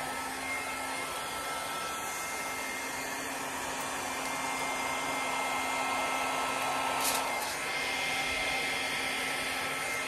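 Hand-held hair dryer blowing a steady stream of air over wet acrylic paint in a Dutch pour, a constant motor whine over the rush of air.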